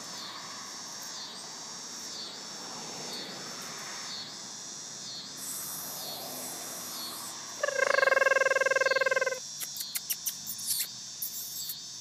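Insects chirping steadily outdoors in a regular pulsing rhythm. Past the middle a louder, steady buzzing tone sounds for about a second and a half, followed by a few light clicks.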